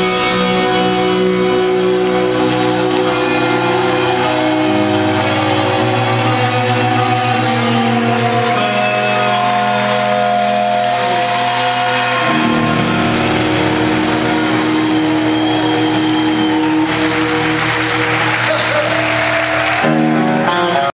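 Live rock band playing through a theatre PA, electric guitars holding long sustained chords that shift every few seconds. A hissing wash of noise swells over the music near the end.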